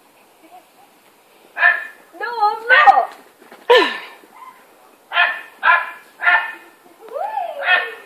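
Labrador barking repeatedly, starting about a second and a half in, about seven short, loud barks with a couple of wavering whines among them.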